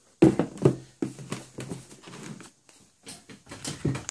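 Handling noise: a sneaker being set on and shifted about its cardboard shoebox, a string of irregular knocks and taps, the loudest just after the start.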